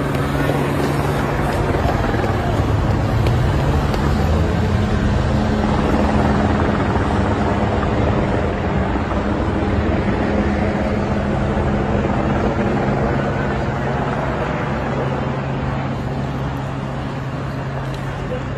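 Race team support cars driving past one after another at low speed, over a continuous low engine drone.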